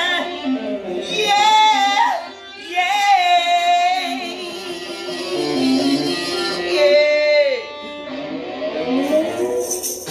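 Blues song: a woman singing long held notes with vibrato over an instrumental backing, one note ending in a downward slide about three quarters of the way in. A tambourine comes in at the very end.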